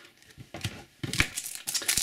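A foil trading-card booster pack crinkling as it is picked up and handled. The first second is nearly quiet with a few faint ticks; the crackling starts about a second in.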